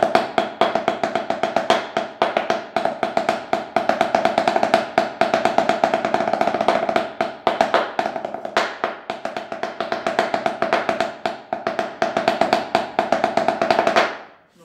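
Drumsticks playing rapid, steady strokes on a towel-muffled tarola (banda snare drum), with the drum's ringing tone under the hits; the playing stops abruptly at the end.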